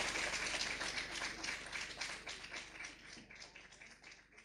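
Audience applauding: a dense patter of many hands clapping that gradually fades away toward the end.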